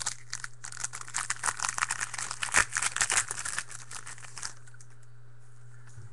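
Foil trading-card pack wrapper being opened and crinkled by hand: a dense run of crackling for about four and a half seconds, then it stops.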